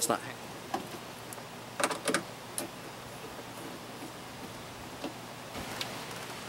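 A few light knocks and clicks from hands working at a bare car door and its removed panel, the loudest a short cluster about two seconds in, over a steady background hiss.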